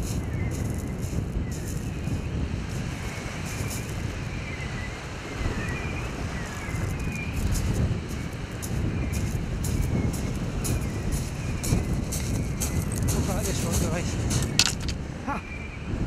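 Wind buffeting an unshielded headcam microphone, with the crunch of footsteps on shingle.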